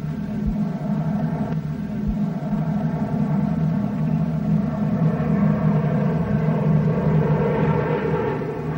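Steady drone of many bomber aircraft passing overhead. It starts abruptly and swells slightly louder.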